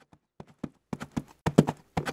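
Galloping hoofbeats sound effect: a quick, irregular run of hoof strikes that starts faint and grows louder.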